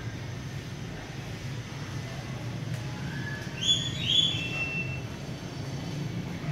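Steady low rumble of city traffic, with a few short high-pitched beeps about three to four seconds in, the middle two the loudest.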